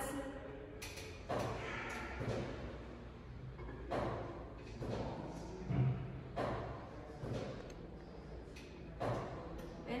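Nautilus One abdominal crunch machine worked through slow repetitions: a series of soft thuds and knocks from the weight stack and pivoting arms as the weight is lifted and set down, several times at irregular spacing.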